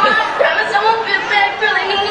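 Voices with no clear words: dialogue from a filmed scene played over a concert hall's speakers, mixed with audience chatter.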